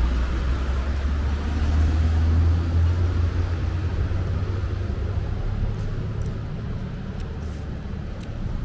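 Street traffic passing: a low engine rumble that swells two to three seconds in and then slowly fades.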